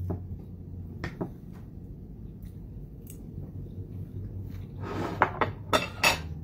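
Knife and fork clinking and scraping on a plate a few times, with a pair of clicks about a second in and a cluster near the end, over a low steady hum.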